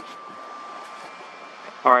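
Steady outdoor background noise with a faint thin tone that fades out about a second and a half in, then a man says "Alright" near the end.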